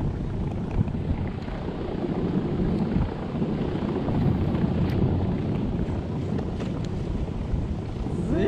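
Wind buffeting an action camera's microphone: a steady low rumbling noise, with a few faint clicks.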